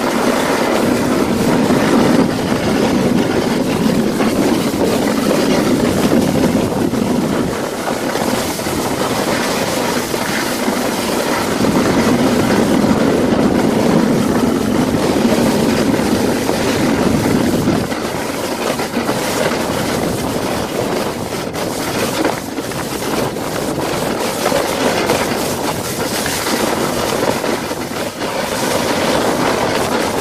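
A toboggan sliding fast down a packed-snow run, its base scraping and rumbling steadily over the snow. The rumble is heavier for the first seven seconds and again from about twelve to eighteen seconds in.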